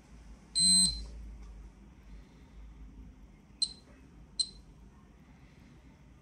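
Ecotest Terra MKS-05 dosimeter-radiometer beeping once, loudly, as it switches on. Two short high chirps follow less than a second apart: its count clicks for single detected particles at background radiation.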